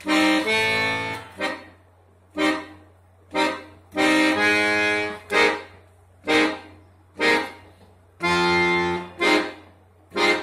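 Piano accordion playing jazz chords: long held chords alternate with short, detached chord stabs, about one a second.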